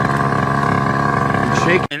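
Moped engine running at a steady pitch while ridden, choked down and bogging under load, which the rider suspects is a clogged fuel system; it seems to be clearing out a little. The sound cuts off abruptly near the end.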